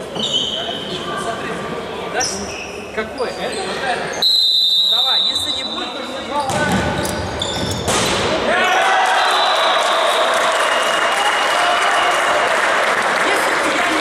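Futsal game sounds in a large sports hall: a ball thudding on the wooden floor and players calling out, and a referee's whistle blown once, a long blast about four seconds in. About eight seconds in comes a sudden burst of loud shouting and cheering from players and spectators that carries on.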